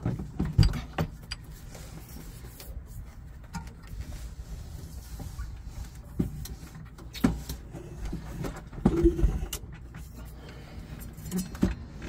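Folding e-bikes being handled and shifted in a storage bay: scattered knocks, clunks and rattles of the bike frames and parts, loudest about half a second in and around nine seconds in, over a steady low rumble.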